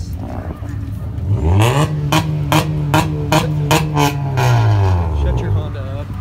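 A Honda car engine revving: it climbs steeply, is held at high revs with a regular stutter about twice a second, then drops back down.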